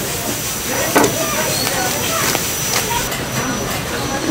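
Busy market-stall ambience: background chatter of voices over a steady hiss, with a sharp knock about a second in.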